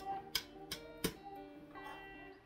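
Steel expandable baton being forced closed: a few sharp metallic clacks about a third of a second apart, with the telescoping tubes ringing on in several steady tones after each strike.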